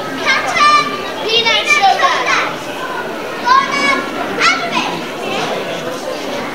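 Children shouting martial-arts calls (kiai) during a demonstration: several loud, high-pitched shouts in the first five seconds, over the steady murmur of a crowd.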